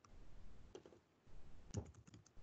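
Faint computer keyboard keystrokes: a few short clicks in two small clusters, one a little before the middle and one near the end.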